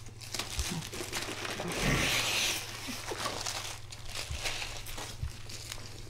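Crisp iceberg lettuce being bitten into and chewed, with leaves crackling and tearing in a run of short crunches; the loudest, longest crunch comes about two seconds in.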